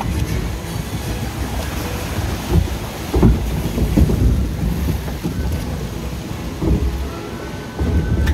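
Log flume ride boat moving through its water channel: water rushing and splashing around the hull, with a steady rumble on the microphone that swells a few seconds in.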